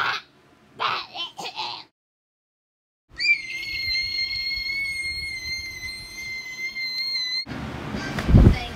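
A few short voice sounds, then a moment of dead silence. After that, a high, steady whistle-like tone glides up briefly at its start, holds for about four seconds and cuts off suddenly.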